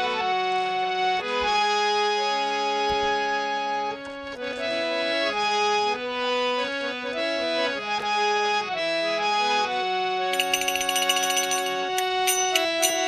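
Instrumental devotional music: a reed-keyboard melody of long held notes over sustained chords, with no singing. Near the end a rapid, bright, high jingling joins in.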